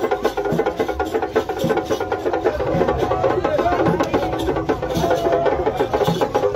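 Live traditional percussion: a fast, dense run of dry wooden knocks and drum strokes, over a sustained pitched line in the middle range.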